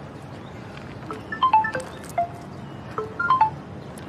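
Mobile phone ringtone playing on an incoming call: two short phrases of clear, chime-like notes, the first about a second in and the second about three seconds in, each stepping mostly downward in pitch.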